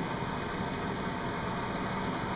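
Steady room noise: a constant hum and hiss with no distinct event.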